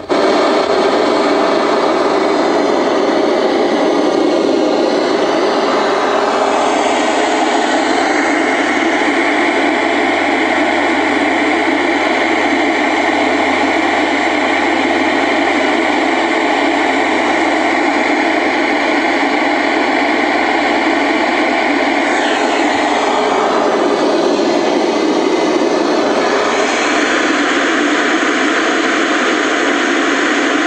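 Loud steady static hiss from the speaker of a 1977 Zenith Chromacolor II portable colour TV tuned to no station, starting abruptly as the set comes on, with a low hum underneath. The hiss shifts in tone twice, about a quarter of the way in and again near the end, as the tuner is turned.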